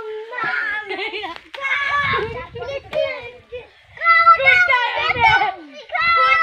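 Children's high-pitched voices calling out and shouting while playing, with the loudest stretch of shouting about four seconds in.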